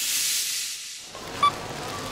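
A bright hissing whoosh for the logo transition, fading out after about a second. It cuts to supermarket background noise with one short electronic beep, like a checkout scanner.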